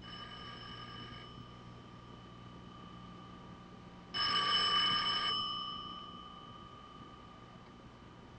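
Telephone bell ringing twice: a fainter ring of about a second at the start, then a louder ring about four seconds in, each fading out afterwards.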